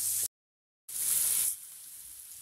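Chopped vegetables frying in hot oil in a pan, a high, even sizzle. It drops out to dead silence for about half a second a quarter second in, comes back briefly, then falls to a faint hiss at about a second and a half.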